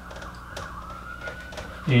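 Faint, steady wail of a siren, its pitch wavering slightly, with a few soft marker taps on a whiteboard.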